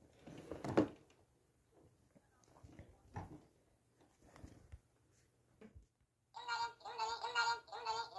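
Faint murmurs and small knocks, then a short high-pitched tune of several notes starting about six seconds in, the loudest sound here.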